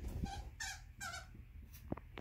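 Green plush dog toy's squeaker squeezed three times in quick succession in a dog's mouth, each a short squeak, followed by a sharp tap near the end.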